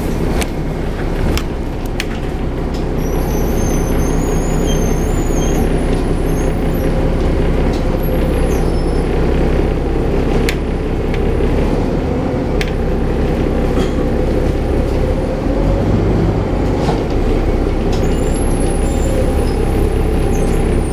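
Autosan Sancity 12LF city bus riding, heard from inside the cabin: its engine and drivetrain drone steadily, with occasional sharp clicks and rattles and a few faint high squeals a few seconds in.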